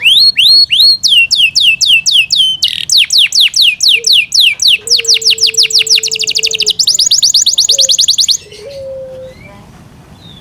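Yorkshire canary singing: rolls of rapidly repeated, sharply falling whistled notes, several a second, the song switching to a new repeated note every second or two and stopping abruptly about eight seconds in, with only a few faint calls after.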